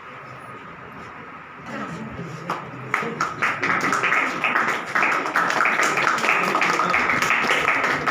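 A group of people clapping, starting about three seconds in and keeping up steadily.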